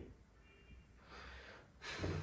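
Near silence with a faint breath a little over a second in.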